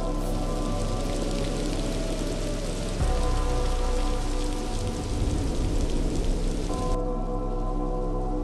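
Trailer soundtrack: a steady rain sound effect over a sustained musical drone, with a deep low hit about three seconds in that carries on for a few seconds. The rain cuts off suddenly about a second before the end, leaving the drone.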